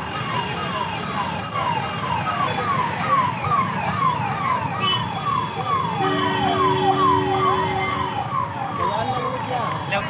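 An electronic siren repeating a quick falling whoop about twice a second, over a steady low rumble of fairground background noise. A steady low two-note tone sounds for about two seconds in the middle.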